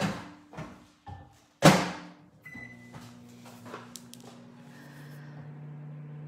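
Microwave oven door knocked and then shut with a loud thud, a short keypad beep, then the microwave running with a steady low hum as it reheats a bowl of isomalt that has not fully melted.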